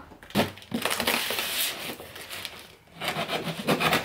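Cardboard and packing paper rustling and crumpling as boxes are handled, then packing tape being torn off a cardboard box near the end.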